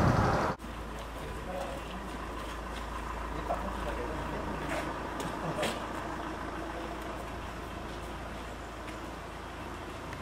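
A vehicle engine idling steadily, with faint voices in the background. A louder noise cuts off suddenly about half a second in.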